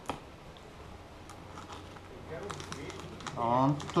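Scissors snipping through the seal on a cardboard camera box: one sharp snip right at the start, then a few faint clicks. A voice joins about two and a half seconds in.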